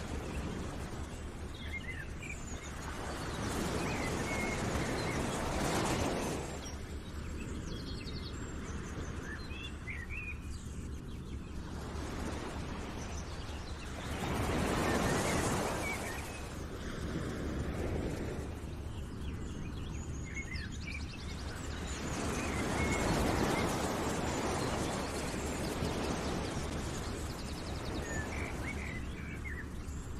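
Outdoor nature ambience: small birds chirping over a rushing noise that swells and fades every several seconds.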